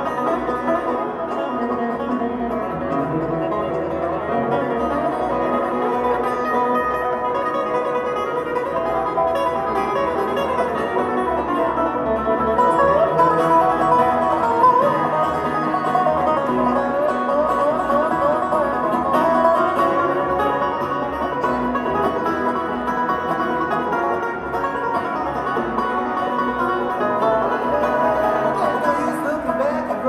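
Live bluegrass string band playing an instrumental passage, with banjo, guitar, fiddle, dobro and upright bass.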